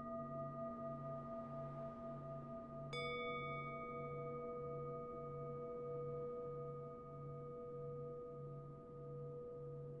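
Singing-bowl meditation music: several steady ringing tones over a low hum that pulses a little more than once a second. About three seconds in, a new bowl is struck, with a brief bright ring of high overtones, and its lower tone rings on.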